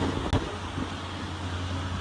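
Steady low hum and hiss of indoor room tone, with one faint click about a third of a second in.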